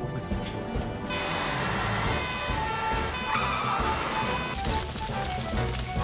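Cartoon background music, joined about a second in by a rushing noise that lasts a few seconds.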